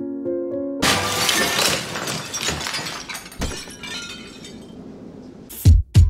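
A few soft electric-piano notes, cut off about a second in by a loud glass-shattering sound effect whose shards tinkle and fade away over several seconds. A deep bass hit lands near the end.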